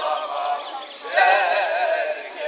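Men singing a Turkish song loudly and unaccompanied, their voices wavering in pitch; a new loud phrase starts about a second in.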